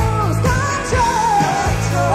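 Live rock band playing, with a sung lead vocal wavering in vibrato over steady bass and drums.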